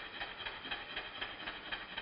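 Stuart S50 model steam engine running on compressed air, played back slowed down: evenly spaced exhaust beats, about four a second. Their evenness is the sign that the slide-valve timing is set alike at both ends of the stroke.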